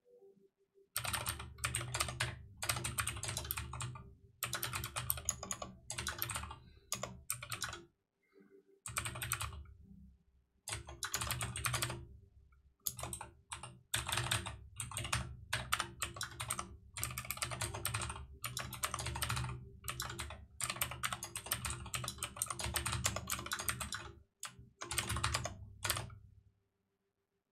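Typing on a computer keyboard: fast runs of keystrokes starting about a second in, broken by several short pauses.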